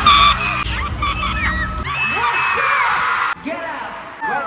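Fans screaming and cheering close to the microphone at a live pop concert, one voice cutting out as it strains, over loud bass-heavy music. The bass drops away a little before halfway, leaving mostly the high screams, which ease off near the end.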